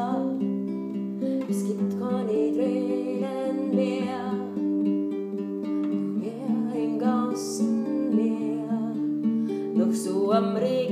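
Nylon-string classical guitar played as a steady accompaniment of held, overlapping chord notes, with a woman's voice singing over it.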